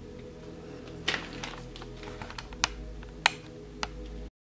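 A handful of short, sharp clicks of small stones in a gravel-filled plastic tub knocking together as a boa constrictor is set down and shifts over them, the loudest near the end, over a steady low hum.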